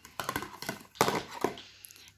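Handling of a small cardboard advent-calendar box as it is opened and a mascara tube lifted out: a quick run of small clicks and scrapes, then a sharper tap about a second in.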